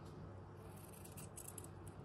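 Small embroidery scissors snipping the edge of a piece of linen fabric: a few faint, short snips of the blades.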